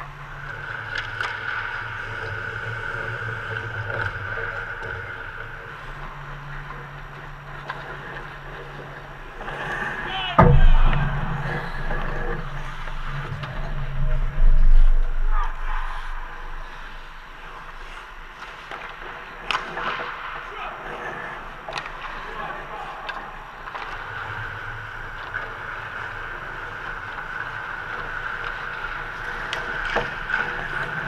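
Ice hockey practice in an indoor rink: scattered sharp clicks and knocks of sticks and puck over a steady hum. The loudest sounds are two heavy thumps with a low rumble, about ten and fourteen seconds in.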